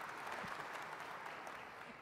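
Audience applauding, slowly dying away toward the end.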